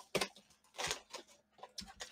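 Cardboard trading-card blaster box being pried open by hand: a few short, faint scrapes and clicks of the flaps and packaging.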